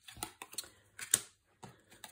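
Playing cards being drawn and laid down on a wooden tabletop: a scattered run of light, sharp clicks and taps, the loudest about halfway through.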